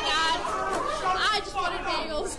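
Several high-pitched voices shouting and yelling over one another, too jumbled to make out words.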